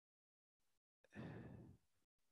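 Near silence, broken about halfway through by one soft exhaled breath, a sigh, lasting under a second.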